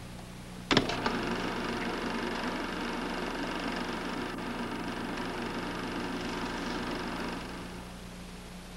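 A steady mechanical whirring buzz, like a small machine running, set off by a sharp click under a second in and fading away near the end, over a low steady hum.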